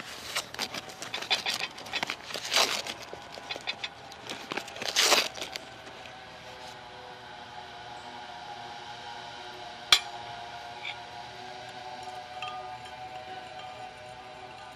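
A sugar bag crinkling and rustling as it is opened and sugar is scooped out with a spoon, with two louder crinkles. Then soft background music, with a single sharp clink of a metal spoon against a glass measuring jug about ten seconds in.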